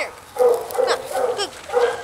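A dog barking, several short barks spaced through the moment.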